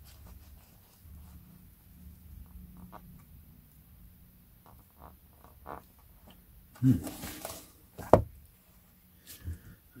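Pages of an old paperback book being handled and turned, soft faint paper rustles and small clicks. About eight seconds in comes a single sharp knock, the paperback being put down on the table.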